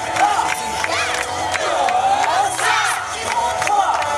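A group of yosakoi dancers shouting calls together, several long rising-and-falling shouts, over sharp rhythmic beats.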